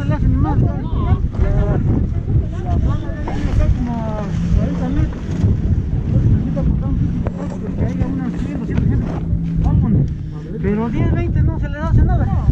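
Wind buffeting the camera microphone in a low rumble, with several people talking in the background. A steady low hum runs through the middle.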